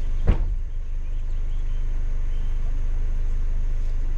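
A car engine idling with a steady low rumble, heard from inside the stopped car, with one sharp thump near the start.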